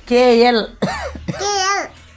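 A young boy speaking in a high voice: three short bursts of speech.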